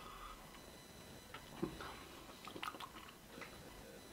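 A person chewing food quietly with mouth closed: faint, irregular wet clicks and smacks.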